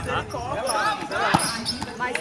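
Volleyball struck during a rally: one sharp smack about a second and a half in, over the voices of players and onlookers.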